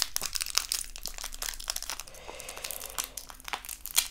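Individual Hi-Chew candy wrapper crinkling and crackling as fingers twist and pick at it, struggling to open it. Quick, dense crackles that thin out after the middle.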